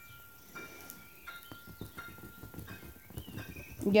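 Faint, irregular light taps and clicks.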